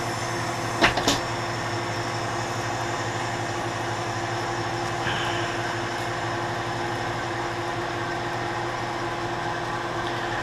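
Hardinge DSMA automatic turret lathe running steadily, its motor and spindle making a continuous hum with several steady tones. Two sharp knocks come about a second in.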